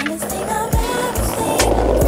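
Skateboard wheels rolling on pavement, under a soul song with sung melody and bass.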